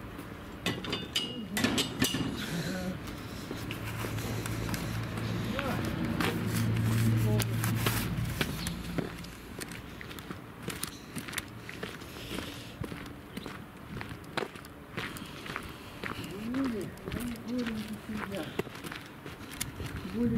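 Footsteps crunching on a frozen dirt yard as a man carries two buckets of water, with short scuffs and clicks throughout. A low steady hum swells and fades between about four and nine seconds in.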